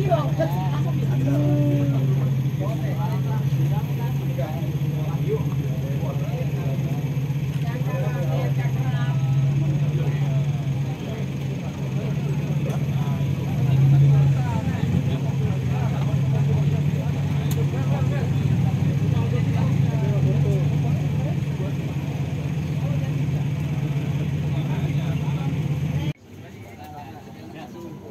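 Off-road buggy's engine idling with a steady low drone, swelling briefly about halfway through, then cutting off suddenly near the end.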